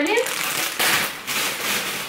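Plastic bags crinkling and rustling as produce is handled and unpacked from a shopping bag.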